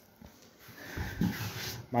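About half a second of near quiet, then a man's heavy breathy exhaling that grows louder toward the end.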